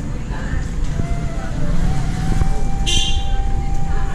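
Murmur of voices over a dense background rumble. A long steady tone sets in about two seconds in and holds, and a brief sharp high burst sounds about three seconds in.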